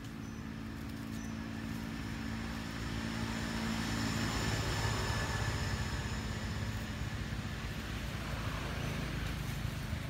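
A motor vehicle passing by: a steady engine and road noise that swells to its loudest around the middle and eases off toward the end.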